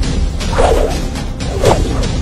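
Fight-scene sound effects over background music: swishing whooshes and a few sharp hits, with the loudest swishes about half a second in and again near the end.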